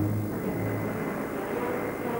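Propeller aircraft engines droning low and steady in flight.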